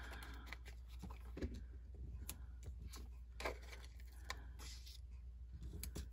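Faint handling of paper and cardstock on a tabletop: scattered soft rustles and small taps as pieces are picked up and set down, over a steady low hum.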